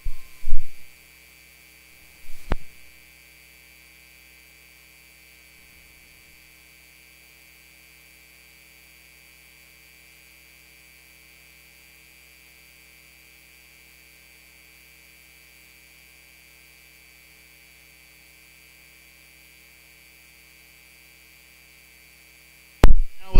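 Steady electrical mains hum on the audio feed, with a low thump about half a second in and a sharp click about two and a half seconds in. The speech has dropped out of the feed, leaving only the hum.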